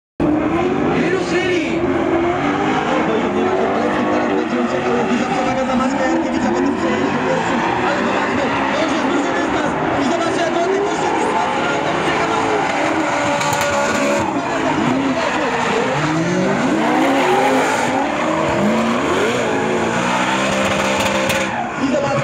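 Drift cars' engines revving hard, rising and falling over and over as the drivers work the throttle, with tyres squealing as the cars slide sideways.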